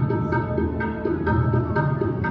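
Sikh kirtan music: tabla keeping a steady beat under sustained melodic tones.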